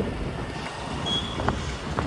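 Steady low running noise of a motorbike being ridden along a road, with wind on the microphone. A brief faint high tone sounds about halfway through.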